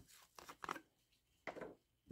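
Faint scrapes and clicks of a plastic screw cap being twisted off a bottle of grip tape solvent by gloved hands, in a few short bursts about half a second in and again near the middle.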